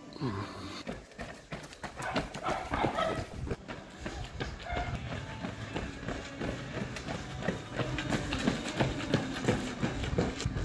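Running footsteps slapping on a stone-paved street: quick, irregular strikes that grow louder as runners come closer. Voices are heard at times.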